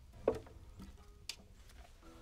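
Quiet background with two small clicks: a soft knock with a faint ring about a quarter second in, and a sharper tick about a second later.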